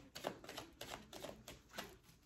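A deck of tarot cards being shuffled by hand: a quick, uneven run of soft card clicks and flicks.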